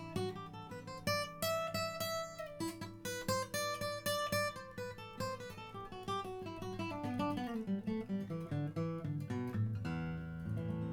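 Martin 000-18 mahogany-bodied acoustic guitar played by hand, a run of single plucked notes over ringing bass notes, the melody climbing early on and then stepping down.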